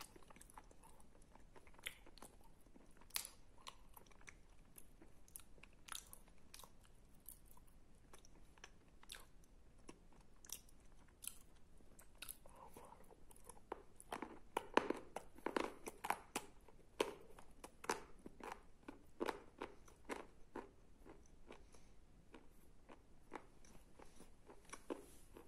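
Close-up mouth sounds of eating wet Tavrida clay paste off the fingers: sticky chewing with sharp clicks and crunches. The clicks are sparse at first, then come thicker and louder about halfway through.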